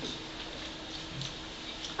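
Quiet room tone: a steady low hum under a faint hiss, with a few faint ticks.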